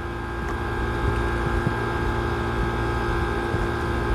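A steady machine hum with several held tones over a low rumble, unchanging throughout.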